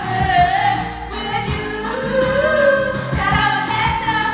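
Women singing a pop song into karaoke microphones over the backing track, with a steady drum beat and a long held note on the word "you".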